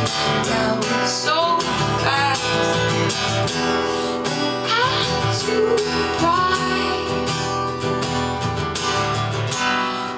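Live acoustic guitar strummed steadily, with a woman's voice singing over it.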